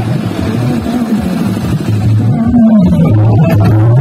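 Loud DJ dance music playing from a stack of vehicle-mounted loudspeakers, with a strong bass line; it gets louder about two seconds in.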